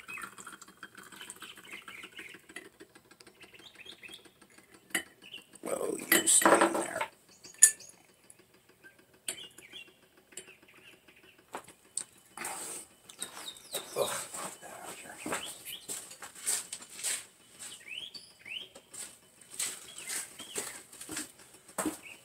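Liquid poured from a glass round-bottom flask into a glass beaker, followed by scattered clinks and knocks of glassware being handled, with a louder knock-like sound about six seconds in. A few short bird chirps come through near the end.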